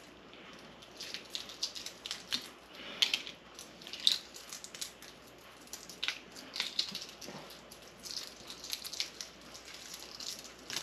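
Shells of hard-boiled chicken eggs being cracked and peeled off by hand: faint, irregular crackling and small clicks as bits of shell break and come away. The shells come off easily.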